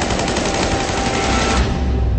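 Rapid automatic gunfire in a film's sound mix: an evenly spaced burst of shots over a low rumble, stopping about one and a half seconds in.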